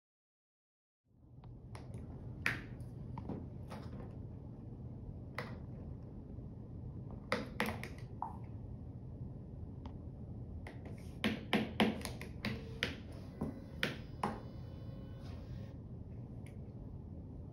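Irregular sharp clicks and taps, most of them close together near the end, over a steady low hum of room and machine noise. These are the keys and controls of an ultrasound machine being worked during a scan. The sound starts about a second in, after a moment of silence.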